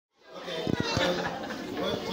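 Overlapping chatter of children and adults in a room, fading in from silence at the start, with a few short knocks around the first second.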